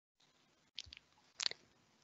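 Quiet line noise with two faint short clicks, about two-thirds of a second apart.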